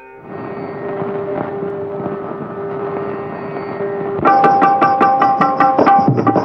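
Instrumental opening of a 1950s Tamil film song, played by a film-song orchestra: a sustained tone over a busy instrumental texture. About four seconds in it grows louder as percussion and pitched notes enter in a quick, even rhythm.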